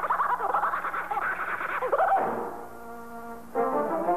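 Cartoon orchestral underscore with brass. The first two seconds are wavering, sliding figures, then a quieter held chord, and the full band comes back loud near the end.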